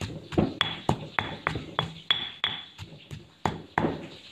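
Granite pestle pounding garlic, chilies and galangal in a granite mortar, about three strikes a second. Some strikes ring briefly off the stone.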